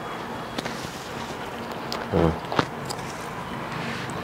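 Faint crackles and clicks of crisp fried singaras being handled and broken open by hand at the table, with a brief low thump about two seconds in and a sharp click just after it.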